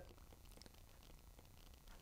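Near silence: a faint low steady hum, with a few faint ticks of a stylus writing on a tablet screen.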